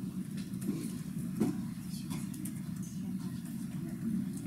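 Laptop keys clicking as someone types, over a steady low room rumble.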